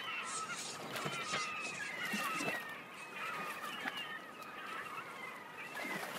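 A flock of birds calling, with many short overlapping cries that rise and fall in pitch, over a faint steady background hiss.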